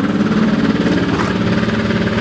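A vehicle engine idling steadily close by, an even, unchanging hum.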